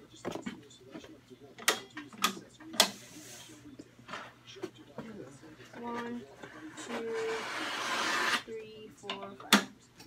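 Yard signs being handled and shuffled on a counter: a few sharp clacks and knocks, and a longer rustle that swells and cuts off suddenly between about seven and eight and a half seconds in.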